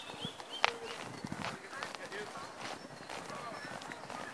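Outdoor park ambience of faint chirps and distant voices, with one sharp knock a little over half a second in.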